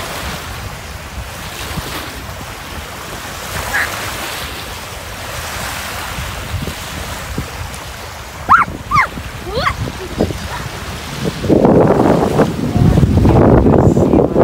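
Wind with small waves washing on a sandy sea shore. A few short, rising high calls come about halfway through. Near the end, strong wind buffets the microphone and becomes the loudest sound.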